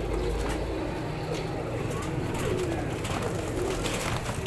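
Domestic pigeons cooing in the background, with a few short clicks and rustles as a young pigeon is handled.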